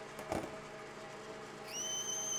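Metal lathe running steadily with an outside chamfer tool spinning in its collet. A light knock comes shortly in, and near the end a high, steady squeal starts as a .308 Winchester brass case mouth is pressed onto the spinning chamfer tool and its outside edge is cut.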